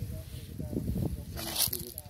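Brief, untranscribed speech over a low, uneven rumble on the microphone, with a short hiss about one and a half seconds in.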